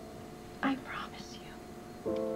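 A woman crying: one short, breathy sob about half a second in, over a faint held note of soft background music.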